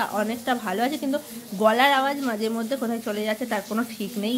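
A woman talking, her voice close to the microphone.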